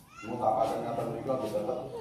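A man's voice reciting in long, drawn-out syllables, starting a moment in and stopping just before the end.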